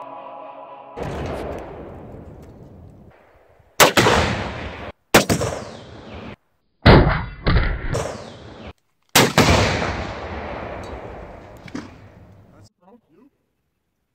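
Background music ending about a second in, then about six loud, sudden bangs in quick succession, each trailing off in a long rumbling echo: gunshots and exploding-target detonations going off downrange.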